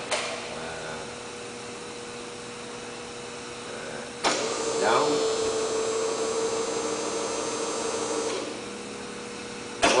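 Blanchard 16-inch rotary surface grinder running with a steady hum. About four seconds in, a louder whirring starts as the grinding head is powered up or down, with a brief falling whine just after it starts, and it stops about four seconds later. A sharp click comes near the end.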